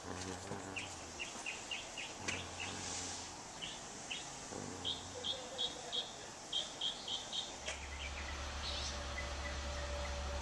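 A small bird chirping in quick runs of short, high chirps, with faint distant voices. A steady low hum comes in about three-quarters of the way through.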